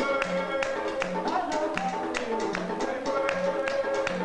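Haitian Vodou drumming on tall hand drums: a quick, even rhythm of sharp strikes over a repeating low drum tone, with men singing over it.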